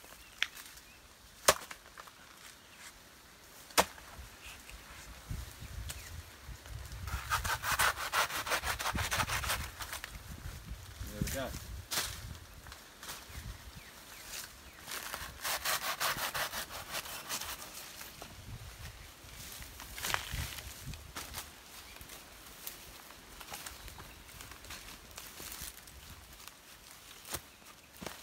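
Two sharp knocks in the first few seconds, then a hand pruning saw cutting through a soft, fibrous banana stem in several bouts of rapid back-and-forth strokes.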